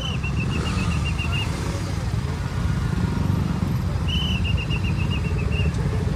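Several motorcycle engines idle and creep forward in dense traffic, a steady low rumble. Over it a shrill trilling whistle is blown twice: once at the start for about a second and a half, and again from about four seconds in.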